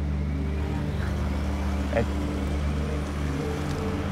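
A steady low drone made of several held tones, unchanging throughout, with a man briefly murmuring a word about two seconds in.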